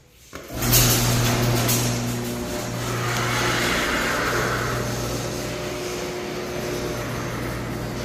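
An automatic garage door opener starting suddenly about half a second in and running on with a steady motor hum over a rumbling rattle.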